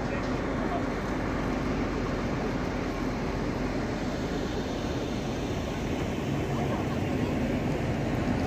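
Busy city-square street ambience: a steady wash of pedestrians' chatter mixed with passing traffic.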